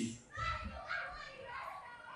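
Faint voices of children in the background.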